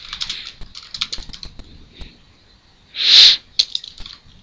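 Computer keyboard typing in short irregular runs of key clicks. About three seconds in, a brief loud rush of noise, the loudest sound here, cuts across the clicks.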